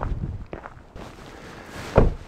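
Footsteps of a person walking away over rocky, frosty ground, fading out after about half a second, with a sharp knock near the end.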